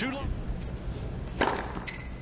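A single sharp crack of a tennis racket striking the ball about one and a half seconds in, over the low steady hum of the stadium.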